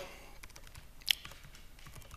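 Laptop keyboard being typed on: a run of faint keystrokes, with one sharper click about a second in.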